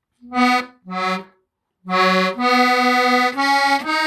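A squeeze box being played: two short separate notes, a brief pause, then a tune of held notes that change pitch every half second or so.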